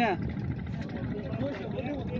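A boat's engine running steadily with a low, even rumble, under people talking; one voice calls out right at the start.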